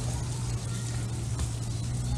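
A steady low hum under an even background hiss, with no distinct event.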